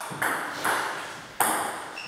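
Table tennis ball bouncing, about four sharp clicks spaced unevenly, each ringing briefly in the hall.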